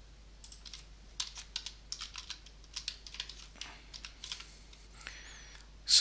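Typing on a computer keyboard: a run of irregularly spaced keystrokes that thins out in the last second or so.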